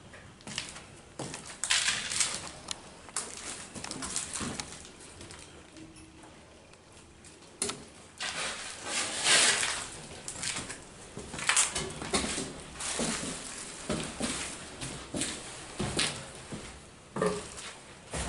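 Irregular crunching, scuffing and rustling of debris underfoot: footsteps picking over trash and rubble on a littered floor, in uneven bursts with a quieter stretch about halfway through.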